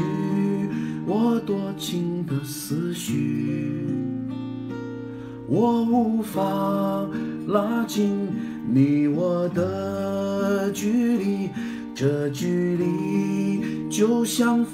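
Steel-string acoustic guitar strummed, with a man singing a slow Chinese ballad over it and holding some notes long.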